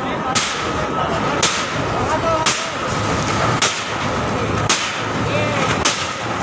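A metal crowbar striking a wooden stall frame to break it apart: six sharp blows, about one a second.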